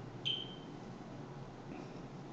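A single short, high-pitched beep or ping that starts sharply about a quarter-second in and fades within about half a second, over faint room noise.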